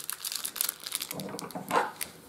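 Plastic packaging of a card of nylon jewellery cord crinkling as it is handled, in a scatter of small irregular crackles.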